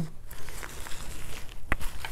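Hands handling a red nylon first aid pouch and a plastic-wrapped tourniquet package: faint rustling, with one sharp tap about a second and a half in.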